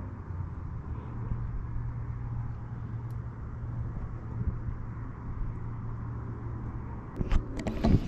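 Steady low outdoor background rumble picked up by a phone microphone, with a few handling knocks about a second before the end.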